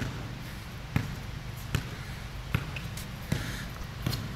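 A basketball being dribbled on a concrete court: about five bounces, evenly spaced just under a second apart.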